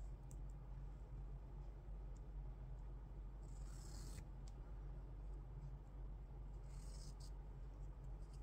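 Faint scratchy rustling of black waste yarn being picked and pulled out of knitted sock stitches with a darning needle, in two short bursts about three and a half and seven seconds in, with a few small clicks, over a steady low hum.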